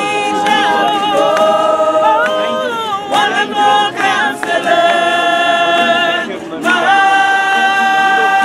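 A small gospel choir singing a Christmas carol unaccompanied, several voices together, ending on long held notes of about two seconds each with a short breath between them.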